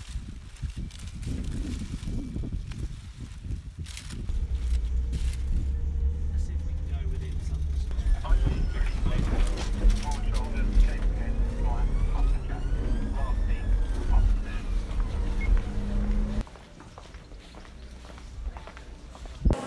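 Engine and road rumble inside a moving police car, with a high tone that slowly rises and then falls in pitch over the latter half. The rumble cuts off suddenly near the end.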